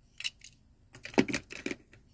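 A few light clicks and taps from die-cast toy cars being handled, the loudest cluster a little past a second in.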